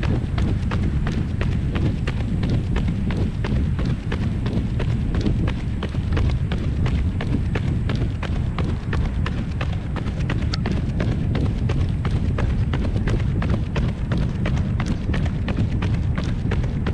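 Running footsteps of carbon-plated Nike Vaporfly Next% 2 shoes striking pavement in a steady rhythm, about three steps a second, over a constant low rumble.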